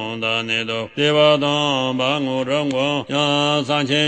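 A man chanting a Tibetan Buddhist tantra in Tibetan, a quick syllable-by-syllable recitation held on a steady low pitch. There are two short breaks for breath, about a second in and again about three seconds in.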